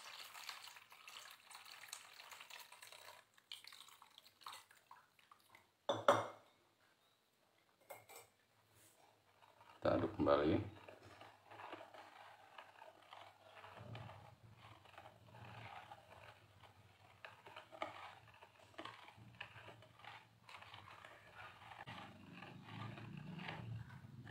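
Wire whisk stirring thin pumpkin and coconut-milk batter in a bowl, with faint swishing and clinking of the wires against the bowl. A sharp knock comes about six seconds in, and a low steady hum sets in about halfway through.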